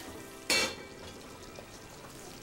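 Food frying in a pan on a restaurant stove: a steady low sizzle with a sudden loud burst of sizzling about half a second in that quickly dies back down.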